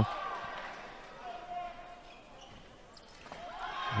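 Fencers' footwork thudding on the piste under faint arena hubbub, with a faint steady tone about a second long in the middle.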